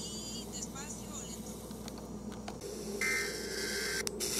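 FM radio hiss coming out of a small loudspeaker, starting suddenly about three seconds in with a faint whistle in it. Before it there are faint, short chirping tones over a low hum.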